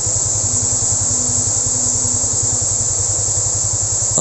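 A vehicle engine running steadily with an even, rapid low pulse, joined by a faint steady hum for a couple of seconds in the middle.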